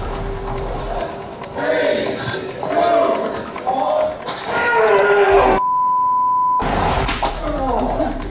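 TV show soundtrack of background music and men's voices, cut by a steady one-second censor bleep about five and a half seconds in, during which all other sound drops out.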